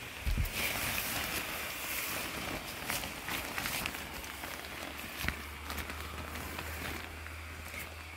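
Airblown inflatable's blower fan running as the nylon figure fills with air, with the fabric rustling and crinkling. A low steady hum sets in about five seconds in.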